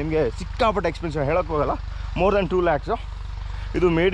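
A man talking over a tractor engine running steadily with a low, even drone, the kind of engine that drives a PTO irrigation pump.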